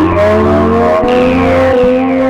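Electronic drone music: a steady low drone with pitched tones sliding slowly upward over it, and high tones sweeping down about halfway through.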